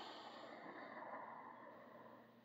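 A man's faint, long breath out, fading away over about two seconds into near silence.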